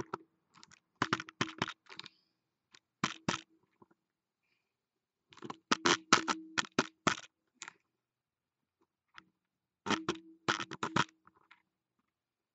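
Rapid clicks and taps close to the microphone, in about five short bursts of several strokes each, with gaps between them.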